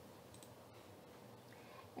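Near silence: faint room tone with a few soft computer-mouse clicks.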